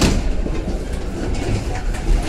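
Ride noise inside a PKP EN57 electric multiple unit on the move: a steady rumble of wheels and running gear on the rails, with a sharp knock right at the start.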